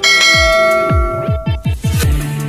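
A bright, bell-like notification chime rings out at the start of a subscribe-button animation and fades away over about a second and a half. Underneath runs electronic background music with a fast beat of deep bass-drum hits that fall in pitch.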